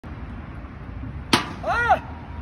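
Added intro sound effect over faint outdoor background noise: a sharp hit a little past halfway, then a short clean tone that rises and falls in pitch.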